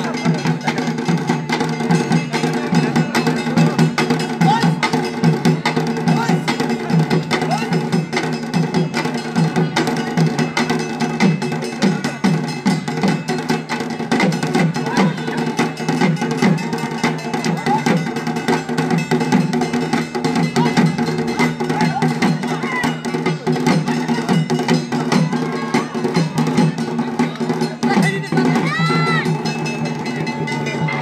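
Dhol drums played in a fast, continuous rhythm, the drumming that accompanies lathi khela (Bengali stick fighting), with crowd voices underneath. A brief high rising-and-falling call sounds near the end.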